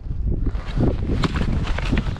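An ice spud (chisel) stabbing into soft shoreline ice, several sharp knocks about half a second apart, punching right through. The shore ice is soft and weak.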